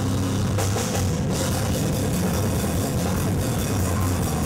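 A heavy rock band playing loud and live, with a pounding drum kit and guitars.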